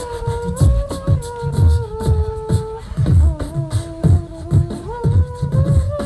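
A group of three beatboxers performing together on microphones: vocal kick drums and hi-hat clicks keep a steady beat while one voice holds a hummed melody line that steps up and down in pitch.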